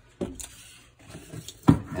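Heavy 50-amp plug and cable being handled: a short clunk of plastic and cord a little way in, quiet handling after, and a sharper knock near the end.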